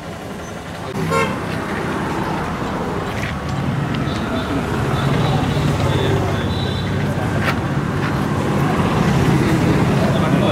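Street traffic: a vehicle engine running steadily, with a horn tooting, under people talking in a crowd.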